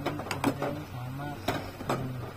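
Metal ladle stirring rice porridge in a stainless steel saucepan, clinking and scraping against the pot's side and rim with about five sharp clicks.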